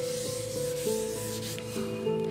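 A chalkboard duster rubbing across a chalkboard, wiping off chalk writing. Steady background music with held notes plays under it.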